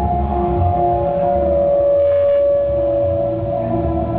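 Live electronic-folk music: electric guitar over laptop-programmed backing with a pulsing bass line. A long held note sounds from about a second and a half in until near the end.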